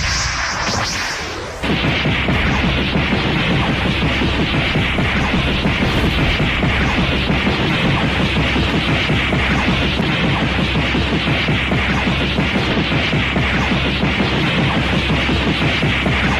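Animated fight sound effects: a long, unbroken barrage of rapid punch and kick impacts mixed with whooshes. It starts abruptly about two seconds in and runs on at a steady, loud level.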